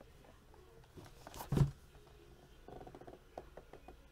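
A single dull thump about one and a half seconds in, a cardboard trading-card hobby box being set down on a table, followed by faint rustling and light taps of hands handling the box.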